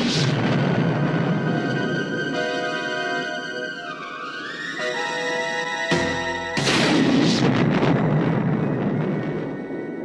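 Action-film soundtrack: a bazooka blast dies away over the first two seconds under dramatic music with a rising tone. A loud explosion comes about six seconds in, and its noise fades over the last few seconds.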